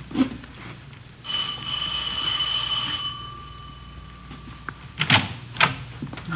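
Doorbell sound effect in an old-time radio drama: a steady bell tone rings for about two seconds, and its lowest note fades out over the next second or so. Near the end come two sharp clicks of the door being opened.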